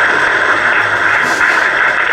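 Steady hiss of AM radio static from a Top House GH-413MUC portable radio's speaker, tuned to a weak AM station at 1639 kHz, heard in a gap in the broadcast speech.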